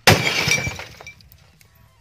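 A sutli bomb (string-wrapped Indian firecracker) exploding inside an old boxy TV set: one sharp, loud bang as the set breaks apart, dying away within about a second, followed by a few small clinks of falling debris.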